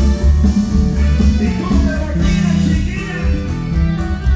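Live norteño band playing loud: an electric bass carries strong changing notes over a drum kit, with a plucked-string melody above.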